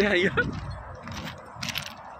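A man laughing and speaking for about half a second, then a few faint, short clicks.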